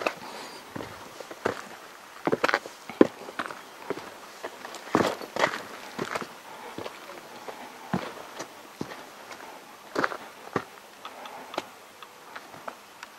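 Footsteps on a rocky track, irregular crunching and knocking steps about one or two a second, with a few louder scuffs.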